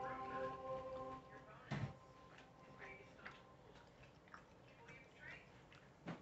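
Faint eating sounds from someone eating a chicken sandwich and waffle fries: small clicks, chewing and mouth noises, with one sharp knock a little under two seconds in. For the first second and a half a few steady tones sound together, like faint background music.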